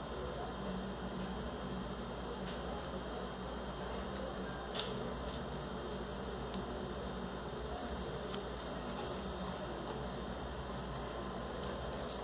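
Steady background noise with a continuous high-pitched whine, and a single faint click about five seconds in.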